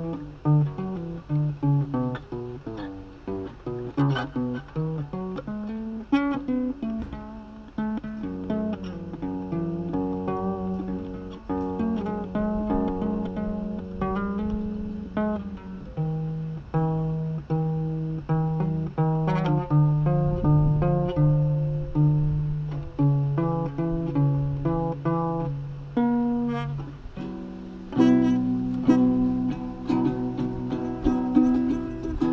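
Acoustic guitar played with picked single notes in a continuous melodic line, with a few strummed chords near the end.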